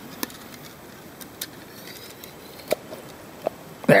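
A few scattered sharp metallic clicks and light knocks from a hand-operated grease gun being handled as its plunger rod is pulled back and the barrel worked loose, the last two clicks the loudest, over faint steady room noise.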